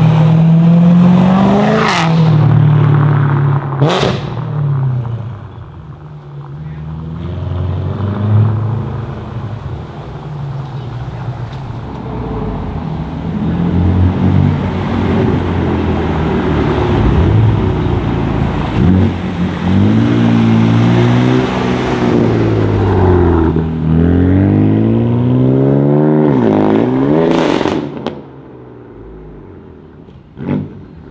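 A BMW E9x M3's V8 revs up as it pulls away, with a sharp crack about four seconds in. Then a BMW F82 M4's twin-turbo straight-six accelerates through several rising and falling rev sweeps and gear shifts, loudest in one last climbing rev shortly before the end.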